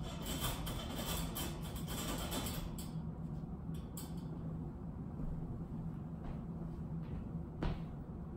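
Wire dog crate door being unlatched and swung open: metal rattling over the first few seconds, a couple of light clicks about four seconds in, and a sharp knock near the end, over a steady low hum.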